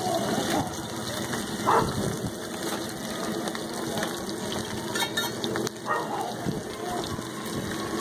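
Oil sizzling steadily on a large flat iron griddle where diced potatoes fry and a burger bun is laid face-down to toast, with brief voices in the background.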